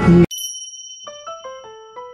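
Edited-in chime jingle marking a scene change: a bright bell ding that rings on, then a quick run of chime notes falling in pitch, about five a second, starting about a second in.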